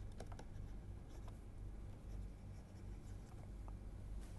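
Faint scratching and tapping of a stylus writing on a tablet screen, over a steady low hum.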